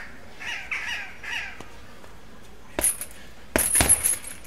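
Bare-fist punches landing on a hanging heavy bag: a single strike nearly three seconds in, then a quick flurry of hits near the end, with a metallic jingle. Earlier, a bird calls four times, short falling calls.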